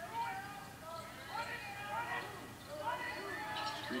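Game sound of a televised basketball game heard through a TV speaker: arena crowd noise with indistinct voices and court sounds during live play, between the commentators' lines.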